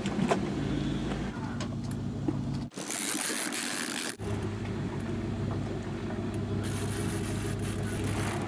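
Charter fishing boat's engine running steadily at trolling speed, a low even drone. It drops away for a moment about three seconds in, leaving only a high hiss, then comes back.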